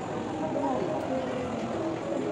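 Indistinct background chatter of distant voices over a steady hum of noise.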